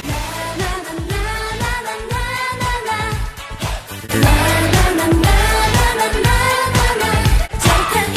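K-pop girl group singing live into microphones over a dance-pop backing track. About four seconds in, a louder passage with heavier bass comes in.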